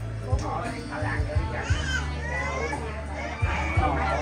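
Several people talking at close range, with music and a steady low hum under the voices and a few scattered low thumps.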